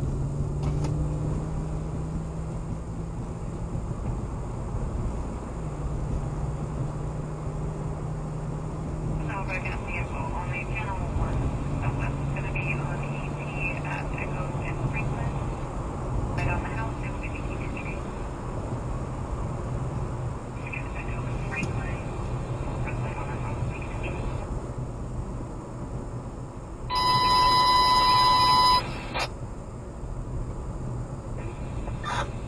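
Police radio scanner: faint dispatch chatter over a steady low road and engine hum. About three seconds before the end comes a loud, steady electronic beep lasting under two seconds: a dispatch alert tone.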